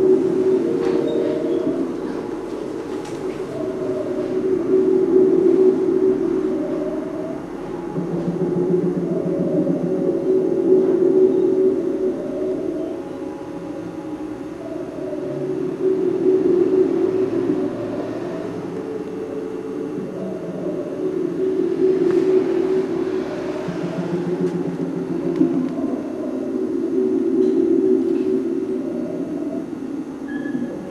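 Sustained low musical drone of several steady pitches, swelling and fading in slow waves about every five to six seconds, with a faint short sliding figure repeating above it.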